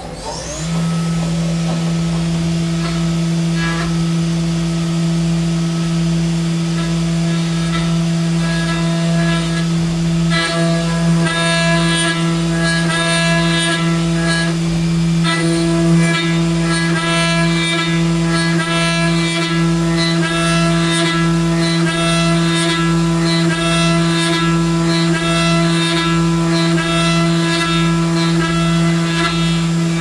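Haas CNC milling machine's spindle running at a steady speed while an end mill cuts an aluminium part: a loud, steady whine with a low pulse about once a second. From about ten seconds in, higher ringing tones come and go as the cutter engages the metal.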